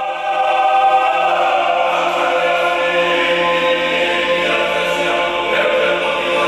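Georgian men's folk choir singing a cappella polyphony, several voices holding long steady chords over a sustained low note.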